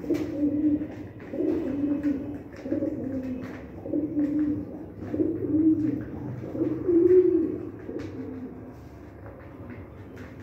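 Domestic pigeons cooing repeatedly: about seven low coos roughly a second apart over the first eight seconds, the loudest near seven seconds. Faint clicks of beaks pecking at seed run underneath.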